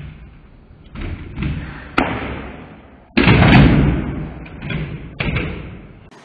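Skateboard wheels rolling over a tiled floor, with a sharp clack about two seconds in and a loud slam of the board landing a little after three seconds, followed by loud rolling that fades away. Another clack comes near the end.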